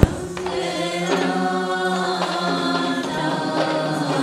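A group of voices chanting a traditional Sri Lankan wannama verse together in long held notes, opening on one sharp percussion stroke.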